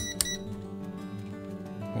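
A digital multimeter's rotary selector dial clicking as it is turned to the frequency setting, followed at once by a short high beep, right at the start. Background music continues underneath.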